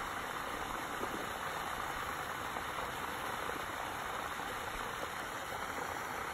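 Steady, even rushing noise of outdoor pond-side ambience, with no distinct splash or knock standing out.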